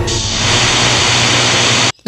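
Loud rushing hiss of noise over a low music drone, cutting off abruptly just before the end.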